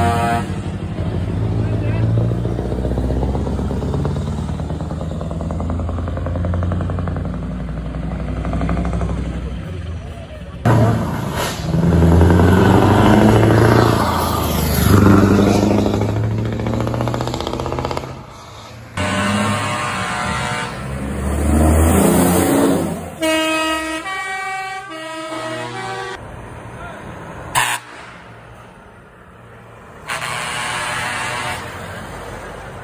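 Heavy trucks driving past with their diesel engines running and air horns sounding, with voices of onlookers mixed in. Later, a short tune of stepped pitched notes is heard.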